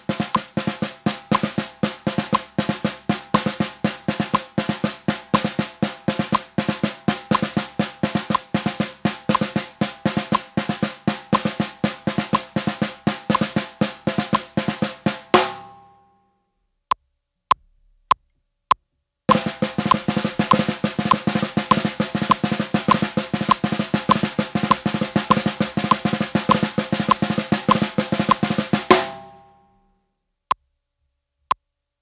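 Snare drum played with sticks in steady sixteenth notes, with drags (quick double grace-note strokes) worked into the pattern. The first pass is at a slow tempo. After about fifteen seconds a few metronome clicks count in, and the same pattern is played again at a faster tempo, ending near the end.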